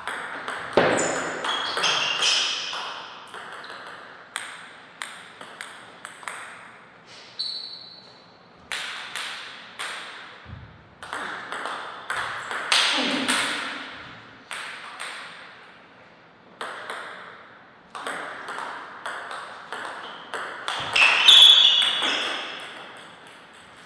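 Table tennis ball clicking sharply off paddles and the table in quick rallies, with short pauses between points. A louder noise comes near the end.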